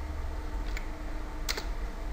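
Keystrokes on a computer keyboard: a faint click a little before one second in and a sharper one about a second and a half in, over a low steady hum.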